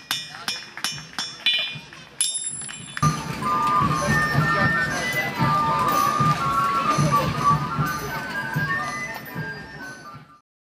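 Smith's hammer striking on an anvil about twice a second, each blow with a bright metallic ring. About three seconds in, music starts suddenly and carries on.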